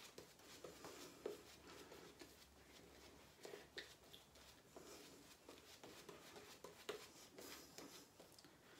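Faint, quick, irregular scraping strokes of a freshly honed Wade & Butcher 5/8 full hollow straight razor cutting stubble through shaving lather.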